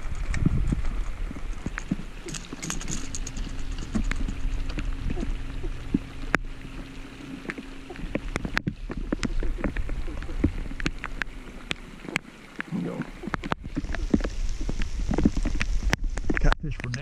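Rain pattering on a boat and tapping on the camera, irregular sharp little clicks over a low rumble of wind on the microphone. A faint steady hum sits underneath for most of it.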